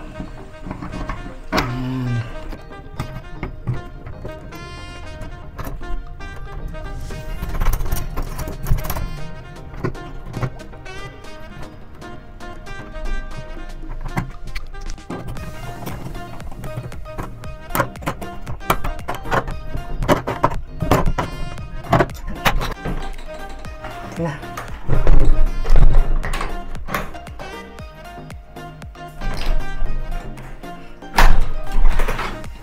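Background music with a steady beat, and a couple of loud thuds about 25 seconds in.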